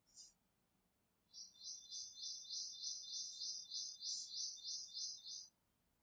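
A bird chirping faintly in a fast, high trill of evenly repeated notes. It starts about a second in and stops sharply about four seconds later.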